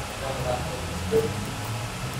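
Quiet background ambience: a low steady hum with faint, distant voices.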